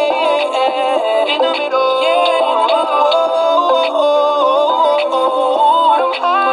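A song with sung vocals playing on an FM radio broadcast, sounding thin with no bass.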